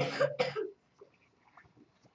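A man clearing his throat with two short, rough coughs in the first second.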